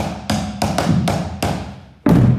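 Percussion ensemble playing with drumsticks: about half a dozen sharp, clicky stick taps in quick succession, fading toward the end.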